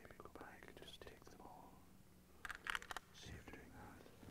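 Hushed whispering voices, with a short cluster of sharp clicks a little past halfway.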